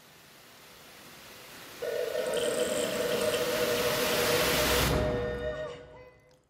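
Live electro-acoustic electronic music. A hissing noise swell builds, and a sustained droning tone joins it sharply about two seconds in. The hiss cuts off suddenly about five seconds in, and the tone fades out near the end.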